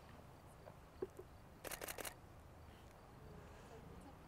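A single faint click, then a quick burst of four or five camera shutter clicks about two seconds in, as the photographer fires a sequence of frames.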